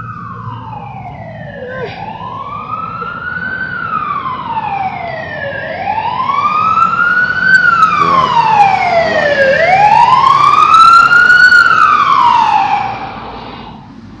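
Emergency vehicle siren on a slow wail, rising and falling about every four seconds and growing louder as it approaches, then cutting off shortly before the end.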